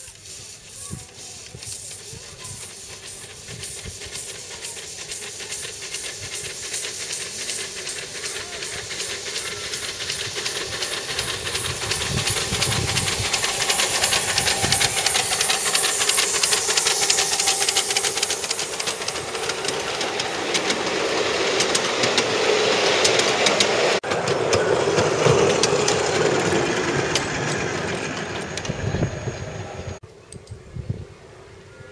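Ride-on miniature live-steam locomotive running past under load, its exhaust chuffing in rapid, even beats over hissing steam. It grows louder as it approaches, is loudest in the middle, and fades near the end as it moves away.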